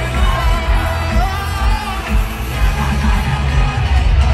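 Live pop band playing at full volume, with a steady drum and bass beat under a male lead singer at the microphone, and yells from the crowd mixed in.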